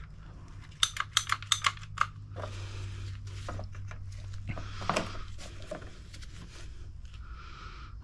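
Hand hose cutter snipping clear poly hose: a quick run of sharp clicks, then a few scattered clicks and handling sounds as the hose is worked onto a barbed elbow fitting. A steady low hum runs underneath.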